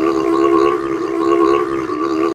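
A man's voice holding one long sung note, slightly wavering in pitch.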